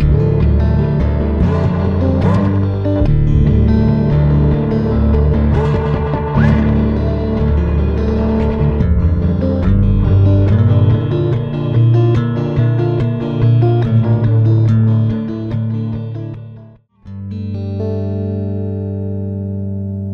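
Fender Stratocaster electric guitar played through a Strymon Volante tape-echo pedal, notes trailing echo repeats, some of which glide in pitch as the pedal's knob is turned. Near the end the sound cuts out briefly, then a held chord rings and slowly fades.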